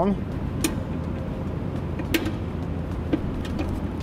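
A few sharp, separate metallic clicks from a brake spoon turning the star wheel adjuster inside an electric trailer drum brake, spreading the shoes toward the drum for the initial adjustment. A steady low hum sits underneath.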